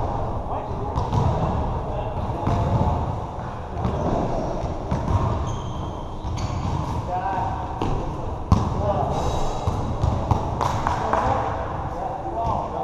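Basketball bouncing on a hard court during a pickup game, a scatter of sharp knocks, the sharpest about eight and a half seconds in, over the players' constant chatter.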